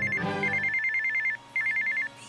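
Phone ringing with an electronic trilling ring, a rapid warble between two close high tones, coming in repeated bursts with short gaps between them.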